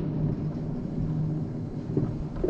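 Mountain coaster sled running down its steel track: a steady rumble of the wheels on the rails with a constant low hum, and one knock just before the end.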